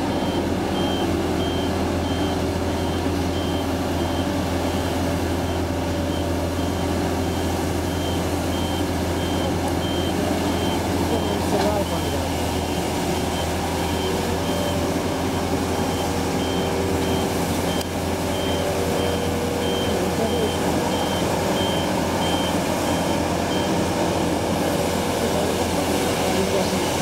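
Compact street-sweeping machine running with its reversing alarm sounding: short high beeps repeating at a steady pace over a steady low engine hum. The beeping stops near the end.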